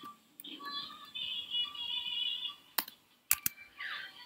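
Computer keyboard keys clicking a few times while code is typed, with a faint wavering pitched sound, like distant singing, in the background for about two seconds in the first half.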